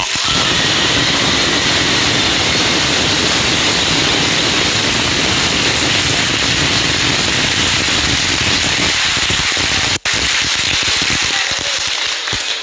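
Audience applauding, loud and sustained for about ten seconds, with a brief sudden cut-out near the end.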